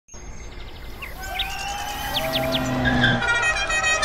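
A car driving up, its engine growing louder, with birds chirping. Music comes in near the end.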